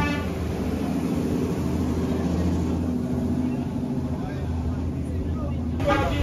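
A vehicle engine idling with a steady low hum, with people talking faintly in the background.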